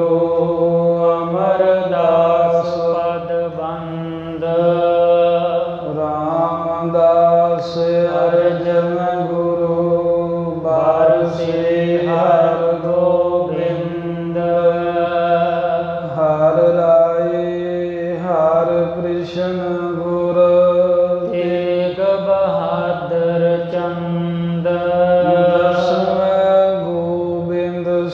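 A man's voice chanting a Sikh devotional invocation in long, drawn-out sung phrases over a steady drone.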